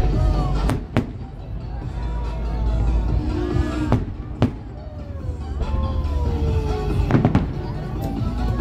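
Aerial fireworks display: shell bursts going off as sharp cracks about a second in, twice around four seconds in and again near the end, over a continuous deep rumble of booms.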